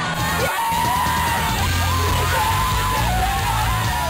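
Loud rock music with a yelled vocal held in long notes over a steady bass line.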